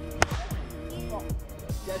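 A single sharp crack of a plastic wiffle ball bat hitting the ball, a fraction of a second in, over background pop music with a steady beat. A shout starts near the end.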